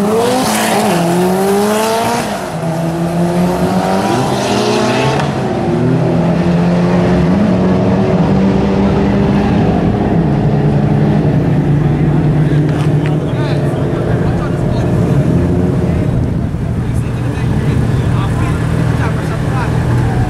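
Mitsubishi Lancer Evolution X drag car accelerating hard down the strip, its engine pitch climbing and dropping with each upshift over the first few seconds, then a steadier engine note for most of the rest.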